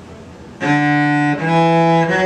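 Cello bowed in two sustained notes a step apart, rising, the opening of the second octave of a D major scale (D, then E). The first note starts about half a second in and the second follows about 1.4 seconds in.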